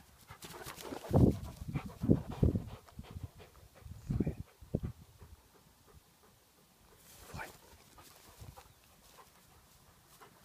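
Hungarian Vizsla panting close up after running in, with irregular low thumps and rustles in the first half that die down after about five seconds.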